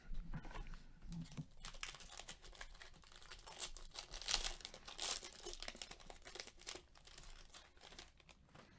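Foil wrapper of a 2018-19 Panini Donruss basketball card pack crinkling and tearing as it is opened by hand: a run of irregular crackles, loudest around the middle.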